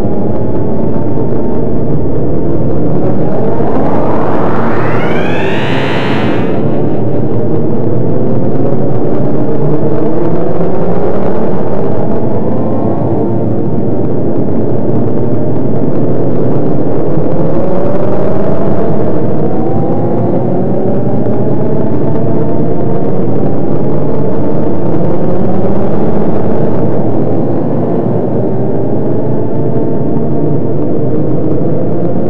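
Dense electronic drone from the DIN Is Noise software synthesizer: many layered tones sliding slowly in pitch, with a cluster of higher tones sweeping steeply upward about four to six seconds in.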